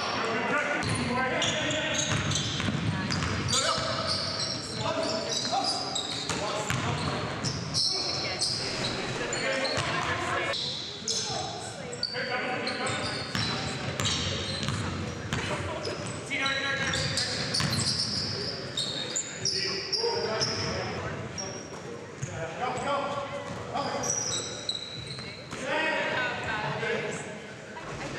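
A basketball bouncing on a hardwood gym floor during play, amid players' voices and calls echoing in a large hall.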